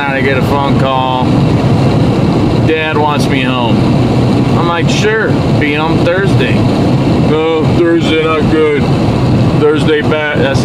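A man's voice talking in spells over the steady road and engine rumble inside a moving car's cabin at highway speed.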